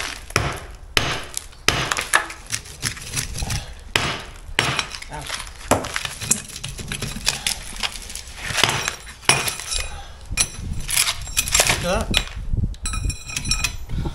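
A club hammer drives a steel chisel into old mortared brickwork, cutting out the bricks at the foot of a wall. The blows come irregularly, with brick and mortar breaking away and rubble clinking. Near the end there is some ringing metallic clinking.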